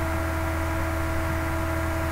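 Steady low electrical hum with a hiss over it and two faint steady tones, unchanging throughout.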